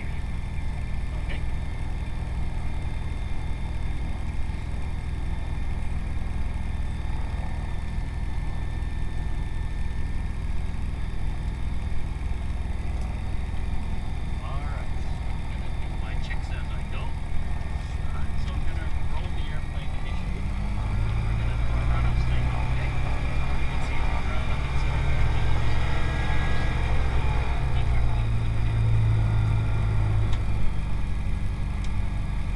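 Piston engine of a single-engine propeller aircraft running at low power, heard from inside the cockpit as a steady low drone. About two-thirds of the way through it grows louder and fuller.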